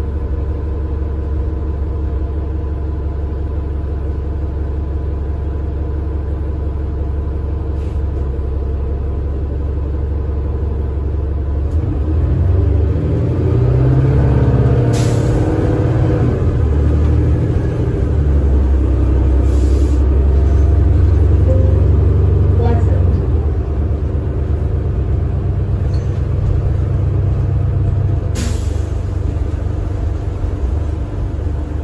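Inside a 2013 New Flyer Xcelsior XD40 diesel bus with a Cummins ISL9 engine and Allison B400R automatic transmission: the engine rumbles low, then about twelve seconds in it grows louder and shifts in pitch for about ten seconds as the bus accelerates through its gears, before easing back. A few short hisses of air come through, about three times.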